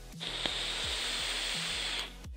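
E-cigarette with a rebuildable dripping atomizer being drawn on: a steady hiss of air and e-liquid vaporizing on the firing coil, starting about a quarter second in and stopping at the end, with a single click shortly after it begins. Background music plays underneath.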